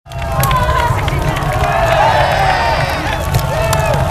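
A group of teenage boys shouting and cheering over one another, starting abruptly, with scattered clicks and a heavy low rumble underneath.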